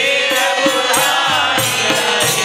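A group of men singing a devotional bhajan, accompanied by a hand-beaten frame drum and small hand cymbals keeping a steady beat of about three strokes a second.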